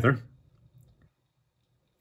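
A man's spoken phrase trails off, followed by a few faint clicks, then dead silence from about halfway.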